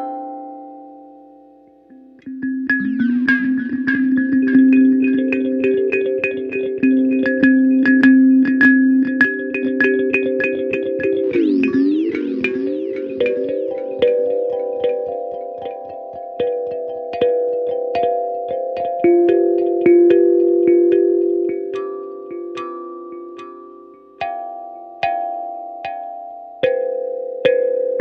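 Electric kalimba's steel tines plucked through its built-in delay, each note trailed by repeating echoes. About twelve seconds in, the echoes warble down and back up in pitch as the delay time is turned.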